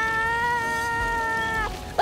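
A voice holding one long, high, level wail, like a character's drawn-out cry, which stops about three quarters of the way through; a new cry starts right at the end.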